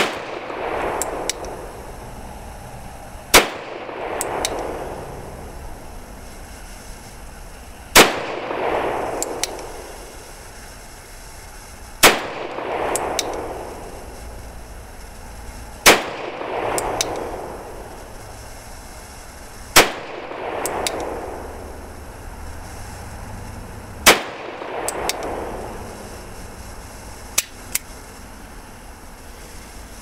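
Nagant M1895 revolver firing 7.62×38mmR Nagant rounds: seven shots, one every four seconds or so, each followed by a rolling echo, emptying its seven-round cylinder. Two small clicks come near the end.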